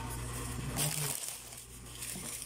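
Brief rustle of a plastic candy-packet strip being picked up and handled, about a second in, over a low steady hum.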